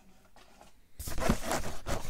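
A cardboard box being handled and slid across a wooden tabletop: rough scraping and crackling that starts about a second in, after a near-quiet moment.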